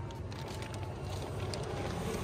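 A low, steady rumble inside a car.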